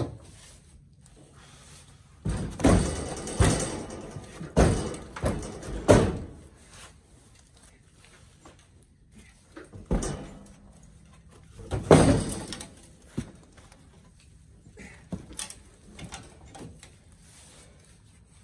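Heavy firewood blocks being dragged and knocked about in a pickup truck's bed as they are hooked and pulled toward the tailgate. A run of loud thuds and knocks comes about two to six seconds in, then more single knocks around ten and twelve seconds, with fainter ones after.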